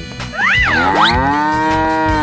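A long, drawn-out cow moo sound effect, starting about half a second in, voicing an animated buffalo, over background children's music, with a couple of quick rising-and-falling swoops.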